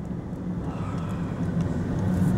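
Steady low road and engine rumble of a vehicle driving along, heard from inside the cabin.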